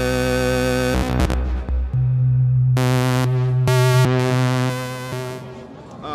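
SSSR Labs Kotelnikov wavetable oscillator in a Eurorack modular synthesizer, playing sustained drone tones. About two seconds in, a low bass note takes over, and the tone switches abruptly several times between bright, buzzy and duller waveforms as the knobs are turned.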